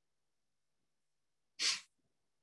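Near silence, broken near the end by one short, sharp burst of a person's breath, like a sneeze, picked up by a video-call microphone.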